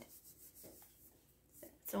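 Faint rubbing of a hand pressing and smoothing a paper flower sticker down onto a journal page.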